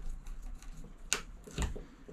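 Light clicks and taps of hands and a small hand tool working the fittings on a fuel-filter manifold board, with two sharper clicks about a second in, half a second apart.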